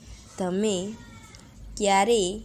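A domestic cat meowing twice: short calls about half a second long, each bending up and down in pitch, the first about half a second in and the second near the end.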